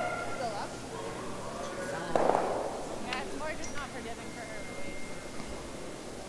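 Granite curling stones clacking together once, about two seconds in, with the arena's echo after it: a hit-and-roll takeout striking its target. Players' voices call faintly on the ice afterwards.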